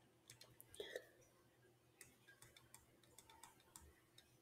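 Near silence with faint, scattered clicks and taps from handwriting being drawn on a screen, about a dozen spread unevenly, with a slightly louder soft sound about a second in.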